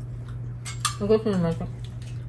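Forks and crab-leg shells clicking against plates while eating, with two sharp clicks a little past half a second in. A short vocal sound comes just after one second, over a steady low hum.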